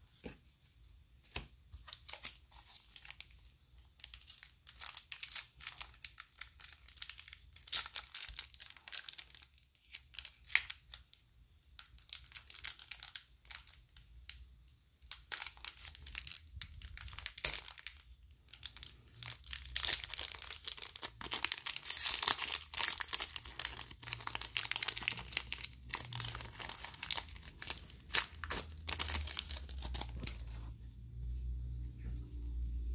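Foil wrapper of a Pokémon TCG booster pack crinkling and tearing as it is worked open by hand: scattered crackles at first, becoming dense and continuous in the second half.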